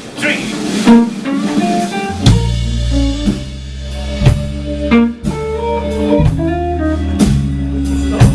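Live blues band starting a number: electric guitar plays single notes alone, then bass and drum kit come in about two seconds in and the full band plays on.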